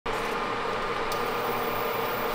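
Butter starting to sizzle in a hot nonstick frying pan: a steady hiss, with one small pop about a second in.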